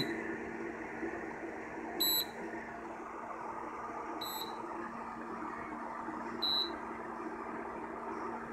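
Nesco portable induction cooktop giving three short, high beeps about two seconds apart over a steady hum. It is cycling between an error code and running under the load of the pancake coil.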